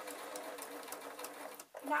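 Domestic electric sewing machine running at a steady speed, stitching through layered fabric and wadding, then stopping shortly before the end.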